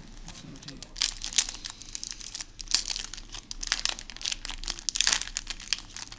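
Yu-Gi-Oh booster pack's foil wrapper crinkling in the hands and being torn open, an irregular run of sharp crackles with the densest stretches about a second in, around three seconds, and near five seconds.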